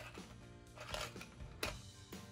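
Soft background music with sustained tones, over a few brief clicks and crinkles of a small plastic accessory pack being handled, the sharpest about one and a half seconds in.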